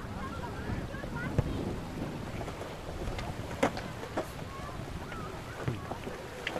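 Wind buffeting the microphone, with several sharp thuds of a soccer ball being kicked and juggled off the feet, the loudest about a second and a half in.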